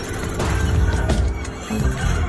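Loud ride soundtrack: music with sound effects over a heavy low rumble.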